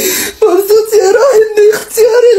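A woman crying and wailing as she talks, her voice high and wavering. A short, sharp noisy burst, like a sobbing gasp, comes at the very start.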